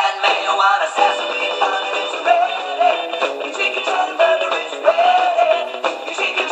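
Sung TV advertising jingle for KFC's Chick'n Cheddar over backing music, a sung melody throughout. The sound is thin, with no bass.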